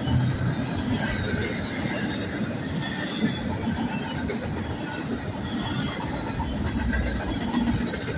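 Double-stack intermodal well cars rolling past on steel rails: a steady rumble and clatter of wheels on track, with brief, scattered high-pitched wheel squeals over it.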